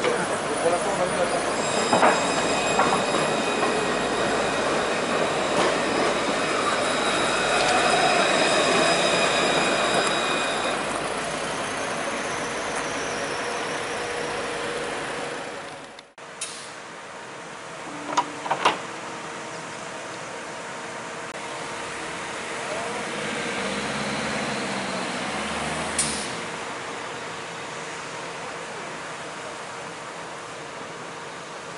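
Alstom Citadis low-floor electric tram passing close by: its wheels rolling on the rails and its electric traction drive whining in several steady high tones, fading as it pulls away. About halfway the sound cuts off abruptly and a quieter, distant tram rolling sound follows, with a few sharp clicks.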